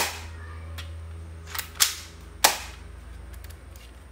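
Sharp plastic clicks from a toy M416 gel blaster's mechanism being worked by hand, cocking it for single-shot mode: a loud click at the start, two close together about a second and a half in, and one more about two and a half seconds in.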